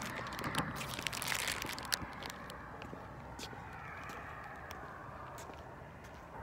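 A plastic Butterfinger candy bar wrapper crinkling and crackling as it is handled. The crackles are dense for about the first two seconds, then thin to a few scattered crackles over a steady low background noise.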